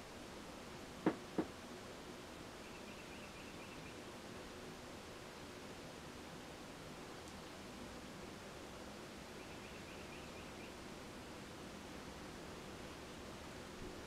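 Quiet room tone with two short, sharp clicks about a second in and a faint, high chirping pattern twice.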